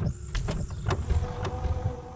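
Sound effects of an animated logo intro: a steady mechanical whirr over a low rumble, with several sharp clicks.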